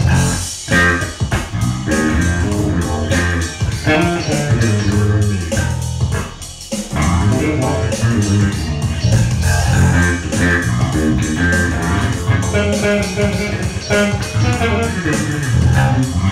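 Squier Precision Bass electric bass playing a funk riff over a backing track. The bass line falls quiet for a moment about six seconds in, then picks up again.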